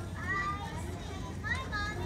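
Children's voices chattering, with short high-pitched calls over a general murmur.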